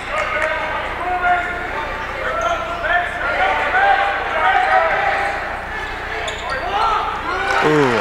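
Sounds of a basketball game on a hardwood gym court: short squeaks from players' sneakers and a dribbled ball bouncing, over crowd voices in the gym.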